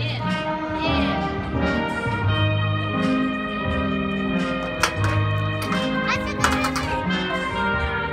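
Recorded instrumental music playing over a large roller rink's speakers, with held notes and a bass line that changes note every second or so.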